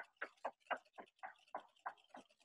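A hand whisk beating strawberry Nesquik and heavy cream in a bowl: faint, rhythmic strokes about four a second as the whipped milk starts to thicken.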